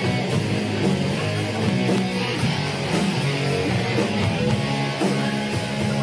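Live rock band playing an instrumental passage with electric guitar, bass guitar and drums.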